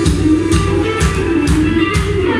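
A blues band playing live, amplified: electric guitar over bass guitar and a drum kit, with drum hits about twice a second.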